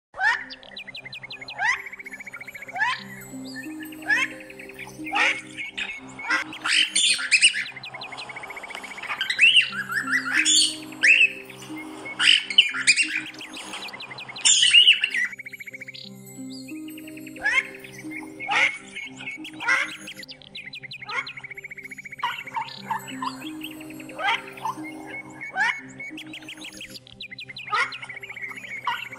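Cockatiel chirping and squawking in many short rising calls and quick trills, over soft background music with slowly changing low notes.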